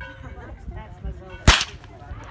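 A single rifle shot about one and a half seconds in: one sharp crack with a short ring-out after it.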